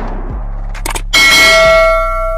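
Subscribe-button sound effect: a mouse click about three-quarters of a second in, then a loud notification-bell ding that keeps ringing, over a low hum.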